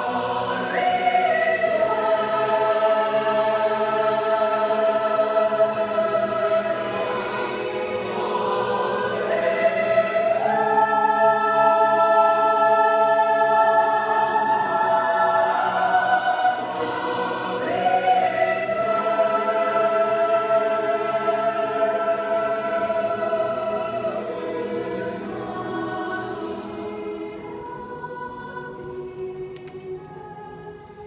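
High school choir singing long held chords in slow phrases, growing softer over the last several seconds.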